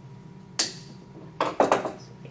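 Wire cutters snipping the excess off a metal eye pin with one sharp click about half a second in, then a short clatter of small clicks as the hand tools are handled on a wooden board.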